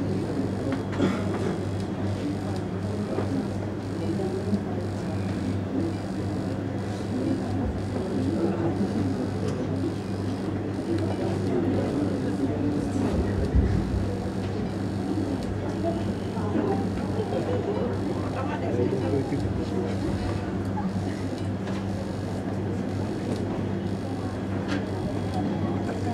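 A steady low hum runs throughout, under indistinct, low murmuring voices.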